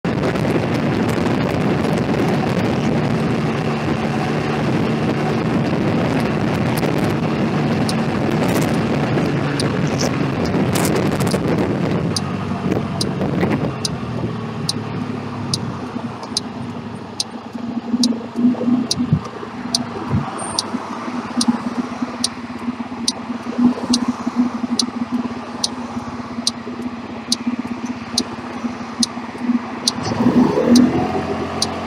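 Small motorbike riding along with engine and wind noise, easing off about twelve seconds in and then idling with a steady low hum while stopped. Through the second half a regular high tick repeats a little faster than once a second.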